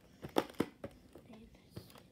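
A VHS cassette and its broken plastic case being handled: several quick plastic clicks and knocks in the first second, then quieter rustling.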